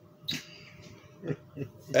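A man's short breathy chuckle, one quick exhale about a quarter second in, in a pause between his words; his talking starts again at the very end.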